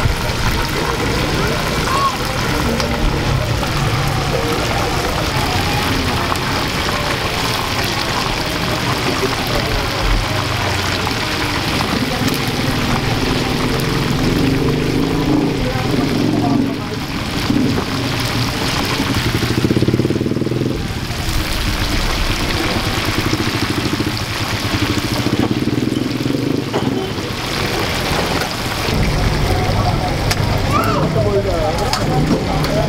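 Chicken pieces deep-frying in a large wok of hot oil: a steady, loud sizzle as the oil bubbles around them. Voices of people nearby come through over it, mainly around the middle and near the end.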